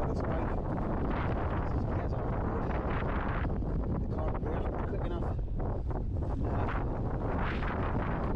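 Strong wind buffeting the microphone in a steady low rumble, with frequent short knocks and rattles from a mountain bike rolling over uneven stone flagstones.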